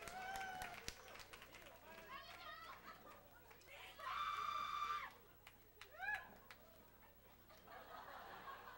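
Concert audience calling out between songs: several short whoops that rise and fall in pitch, one long held yell about four seconds in, and a few claps in the first second.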